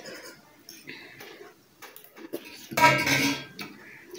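Metal spoon scraping and clinking against a steel plate as the last of the food is gathered up, with a louder metallic clatter that rings briefly about three seconds in.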